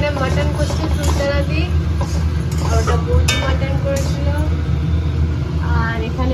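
A loud, steady low rumble runs under several people talking in the background. A metal spoon stirs in a steel kadai, with a sharp click a little over three seconds in.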